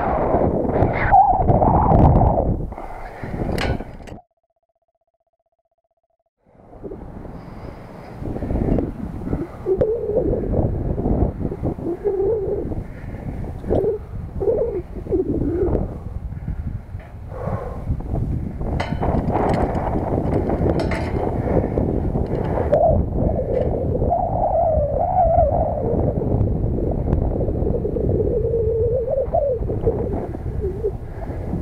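Wind buffeting a head-mounted camera's microphone high on a steel lattice tower, a dense rushing noise, with a few sharp metallic knocks from the climb near the middle. The sound cuts out completely for about two seconds near the start.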